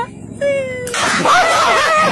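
A dog's high whining calls: two short whines in the first second, then a louder, rougher, wavering cry.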